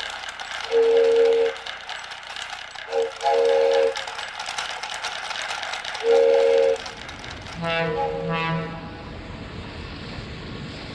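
Cartoon train sound effect: a rapid steam-style chuffing with a whistle tooting four times. About eight seconds in a horn blows twice, and the chuffing gives way to a steady rolling rumble.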